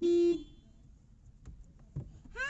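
A Renault car's horn sounds one short, steady honk of about a third of a second, pressed by a small child on the steering wheel. A couple of faint knocks follow.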